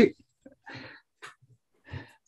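A man's word ends, then near silence over a video call, broken by a faint, soft breathy chuckle about half a second in and a shorter breath just after a second.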